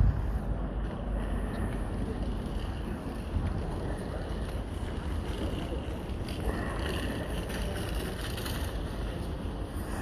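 Wind buffeting the microphone of a handheld phone, a steady low rumble.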